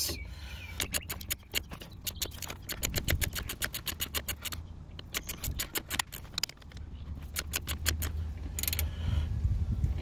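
Hand ratchet clicking in repeated runs of quick strokes with short pauses, cranking a makeshift press that draws a new front control arm bushing into its axle mount.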